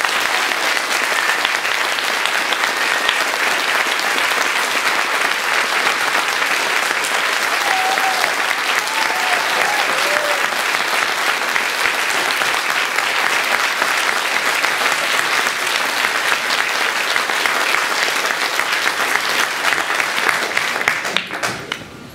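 Audience applauding steadily in a hall, dying away about a second before the end.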